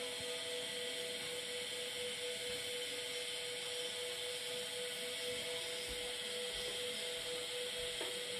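Steady hiss with a steady humming tone beneath it, unchanging throughout, with no distinct events.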